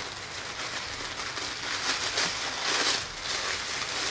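Thin clear plastic wrapper crinkling as it is peeled off a roll of pink poly mesh: a continuous crackling rustle, busiest around the middle.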